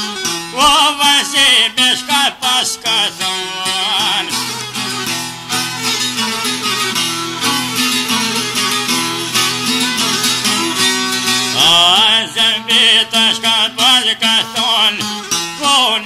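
Albanian folk music: a plucked long-necked lute playing quick notes over a steady accompaniment. In the middle the quick plucking gives way to longer, wavering melody notes for several seconds, and the plucking returns near the end.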